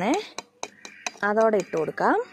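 A few light, sharp clicks of a steel sieve tapping against the rim of a plastic mixer-grinder jar as powder is shaken through it.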